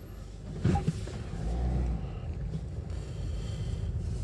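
Car driving slowly, heard from inside the cabin: a steady low engine and road rumble, with two sharp knocks a little under a second in and a brief swell of deeper rumble soon after.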